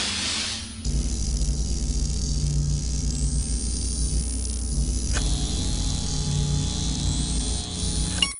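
Synthesized intro music and sound effects for an animated logo: a rush of hiss in the first second, then a loud, steady low rumble with hiss above it, shifting in tone about five seconds in.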